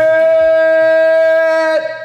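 A man's long shout held on one steady, high pitch, the drawn-out end of a hyped "Let's do it!". It breaks off and slides down in pitch near the end.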